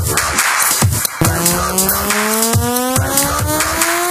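Electronic dubstep track: a wash of noise with drum hits, then about a second in a buzzy synth tone that rises steadily in pitch over the beat, like a revving engine.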